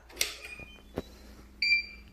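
Two sharp switch clicks, then a single short, high electronic beep near the end, as the room's power is switched back on after being found off.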